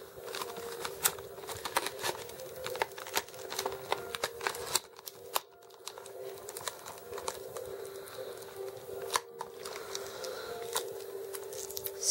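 Plastic blister and cardboard card of an action-figure package crinkling and crackling as it is handled and opened, with many sharp clicks and snaps, over a steady low hum.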